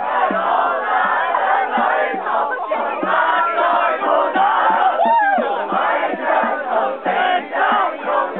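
A crowd of people singing a camp song together loudly, in a shouted, chant-like way. About five seconds in, one voice rises and falls in a whoop above the rest.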